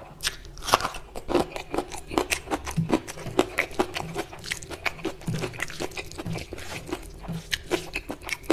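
Close-miked crunching and chewing of a bite of raw red onion: rapid, irregular crisp crunches several times a second, with the loudest crunch just under a second in.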